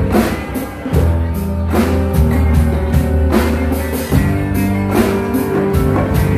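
Live band playing a rock song: strummed acoustic guitar over a steady drum beat and a strong bass line.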